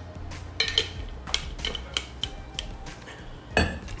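A run of light, sharp metallic clinks and clicks from small hard objects being handled, with a louder knock near the end.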